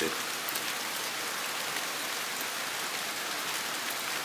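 Steady rain falling, an even hiss that does not let up.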